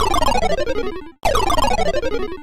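Comic music sound effect: a rapid run of notes sliding down in pitch, each run about a second long. It plays at the start and again about a second in, over a low rumble.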